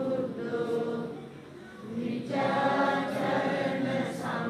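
A group of worshippers chanting Buddhist devotional verses together in unison, in long drawn-out notes, with a short break about halfway through before the chant picks up again.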